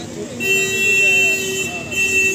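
A vehicle horn sounds in two long, steady blasts: the first starts about half a second in and lasts just over a second, and the second begins near the end. Voices and street noise run underneath.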